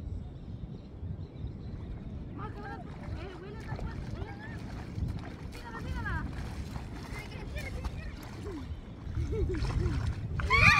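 Wind rumbling steadily on the microphone, with faint distant voices talking now and then.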